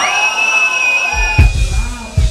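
Live metal band: a steady high note rings out, then heavy kick-drum and bass hits come in about a second in, with the loudest hit near the middle.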